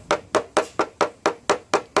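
Paintless dent repair tap-down: a hammer dropped again and again onto a tapper held against the Subaru XV Crosstrek's metal deck lid, about four sharp taps a second, knocking down the high ridges around the dent.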